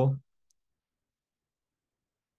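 The end of a spoken word, then dead digital silence with one faint click about half a second in.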